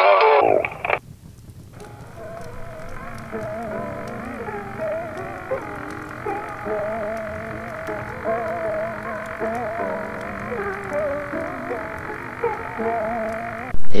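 Singing music cuts off about a second in. Then a muffled, warbling sound with wavering, unsteady tones over a low hum, the lo-fi, glitchy sound of a distorted old tape.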